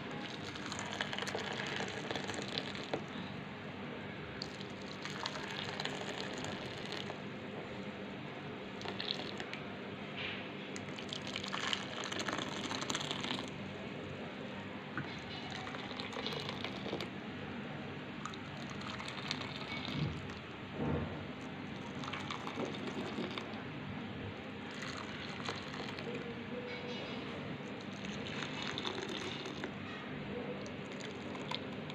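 Hot chocolate-caramel pudding mix being poured from a pan into small plastic bowls: a steady trickling and filling of liquid, with scattered light knocks of the bowls and pan.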